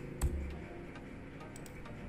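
Keystrokes on a computer keyboard while editing code: one sharper click with a low thud about a quarter second in, then a few lighter ticks.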